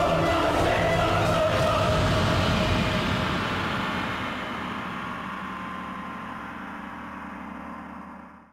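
Dramatic television background score of sustained, held chords, steady for about three seconds and then slowly fading away.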